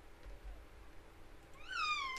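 A cat meows once near the end: a short call that rises and then falls in pitch, over faint room tone.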